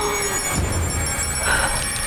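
Film soundtrack: a high electronic whine from a gadget wristwatch charging up, rising slowly and steadily in pitch, over a low rumble and score.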